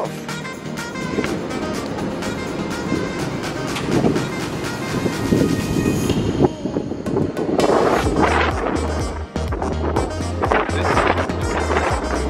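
Background music with a steady beat; a deep bass line comes in about eight seconds in.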